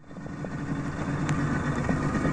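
A small boat's engine running steadily on open water, fading in at the start.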